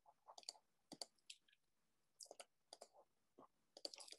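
Near silence broken by faint, irregular clicks of a computer mouse, with a small cluster near the end.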